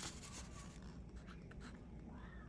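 Faint scratching of writing on paper, a few short strokes over a low steady room hum.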